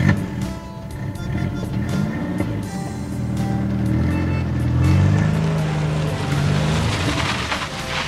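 Car engine sound effect revving, its pitch rising and falling several times, over background music.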